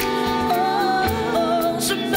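A woman singing a French worship song into a microphone, with held notes over live band accompaniment.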